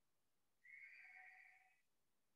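Near silence, broken by one faint, high steady tone that starts about half a second in, lasts about a second and fades away.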